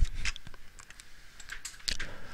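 Several light, irregularly spaced clicks from a computer keyboard and mouse being used at a desk, the loudest right at the start and near the end.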